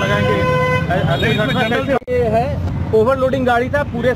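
A vehicle horn honks once near the beginning, a single steady tone lasting under a second, over the low rumble of street traffic.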